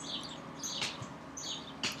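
Faint bird chirps repeating in the background, with two brief clicks about a second apart.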